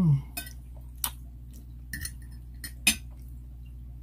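A metal fork clinking and scraping against a ceramic dinner plate: about five sharp clinks spread over three seconds. A brief low sound falling in pitch comes right at the start and is the loudest moment.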